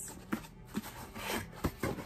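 A cardboard shipping box being handled and tilted in the hands, giving a few short knocks and scuffs.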